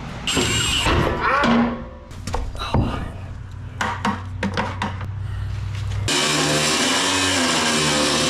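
Background music with scattered metallic clinks of parts being handled. About six seconds in, a grinder starts cutting the steel frame of the scissor lift, throwing sparks, and runs as a steady high hiss.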